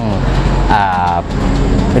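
A motor vehicle running nearby: a steady low rumble throughout, with a man's drawn-out hesitant "uh" about a second in.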